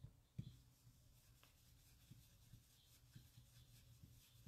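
Very faint rubbing of a round ink blending brush swirled over die-cut cardstock pieces, with a few soft low taps, the clearest about half a second in; otherwise near silence.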